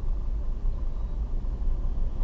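Steady low rumble of a car heard from inside its cabin: engine and road noise while the car moves slowly in traffic.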